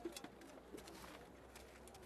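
Faint outdoor ambience: a dove cooing softly, with a few light clicks.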